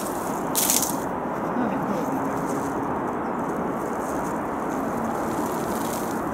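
A short rattling swish about half a second in, as a thrown cast net with a weighted edge spreads and lands on snow.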